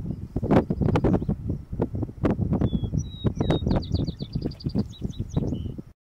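Strong wind buffeting the microphone in gusts, over which a sparrow sings: three high separate notes about halfway in, then a fast high trill and a few trailing notes. The sound cuts off suddenly at the end.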